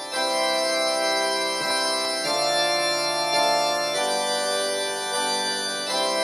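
Organ music: slow, sustained chords that change about every one to two seconds.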